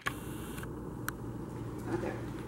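Steady room noise with a low hum, broken by two short clicks, one about a second in and one near the end.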